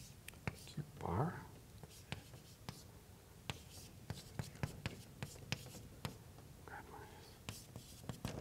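Chalk on a blackboard while an equation is written: a run of short, irregular taps and scrapes as each stroke hits the board.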